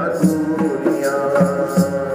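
Punjabi devotional bhajan music: a man singing over a sustained drone, with a hand-drum beat of about two strokes a second.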